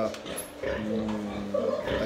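A man's drawn-out hesitation sound, a held "uh" at one steady pitch for about a second, as he pauses mid-sentence to recall a figure.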